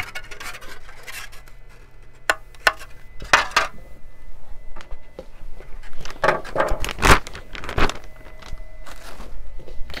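3D-printed hard plastic RC body parts clicking and clacking as they are handled and set down among plastic zip-lock bags, with bursts of bag crinkling. The loudest knocks come about seven seconds in.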